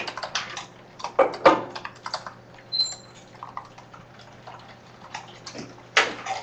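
Computer keyboard being typed on in short bursts of key clicks, with pauses between the bursts.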